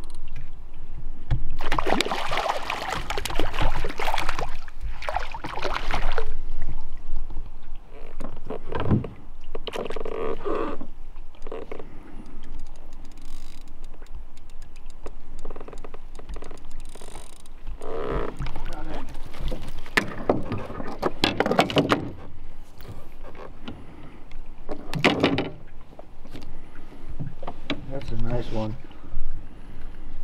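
Lake water splashing and sloshing beside a small rowboat in separate bursts a few seconds apart, as a hooked trout thrashes at the surface and is brought to the landing net.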